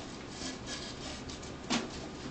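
Rope rubbing and sliding against itself and the object as it is wrapped around and drawn through to form a half hitch, with one brief louder rustle near the end.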